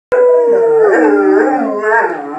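A German Shepherd howling: one long howl that starts on a held note, drops in pitch about a second in, then wavers lower.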